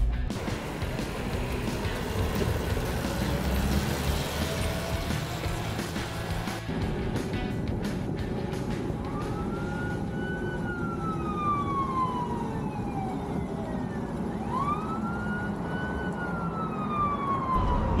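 A police siren wailing twice: each wail rises quickly, then falls slowly over several seconds. The first starts about halfway through, the second near the end, over the steady running and road noise of a small car.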